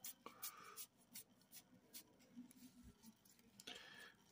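Faint, soft ticks and slides of a stack of glossy trading cards being flipped through by hand, a few small clicks a second.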